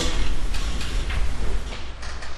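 A pause in speech: room tone with a steady low hum.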